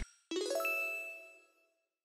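A short bright chime sound effect: a quick run of rising bell-like notes about a third of a second in, ringing out and fading within about a second.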